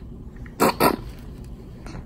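A baby's two quick, loud coughs, about a quarter of a second apart.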